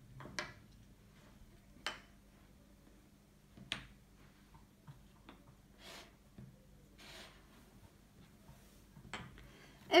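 Wooden memory-game discs being set down on a wooden tabletop: about five separate light clicks, a second or two apart.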